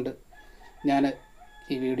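A rooster crowing faintly in the background: one long, steady call, partly under a few spoken syllables.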